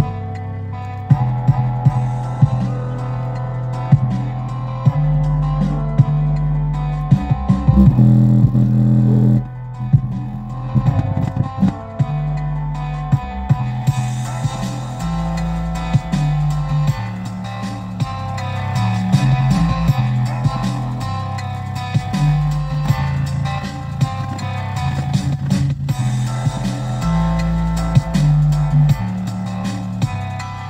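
Music with bass guitar and guitar playing through an old car's factory cassette-radio speakers, heard inside the cabin.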